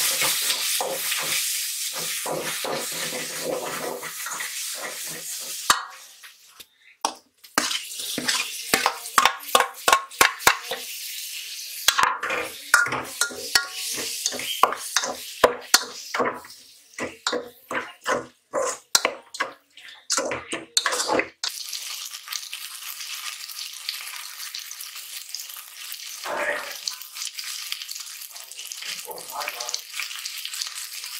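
A tomato-and-onion curry base frying in oil in a pot with a steady sizzle. Through the middle a spoon stirs and scrapes against the metal pot in many quick strokes, and then the sizzle carries on alone.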